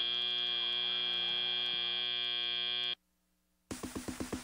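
Arena end-of-match buzzer sounding one steady buzz for about three seconds as the match timer reaches zero, then cutting off suddenly. After a short gap, music with a quick, even beat starts near the end.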